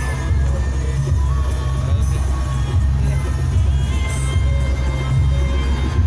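Loud music with heavy, booming bass from a truck-mounted carnival sound system.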